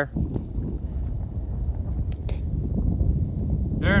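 Wind buffeting the phone's microphone: a low, uneven rumble.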